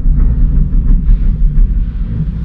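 Loud, uneven low rumble inside a moving Metrocable gondola cabin, with no voices over it.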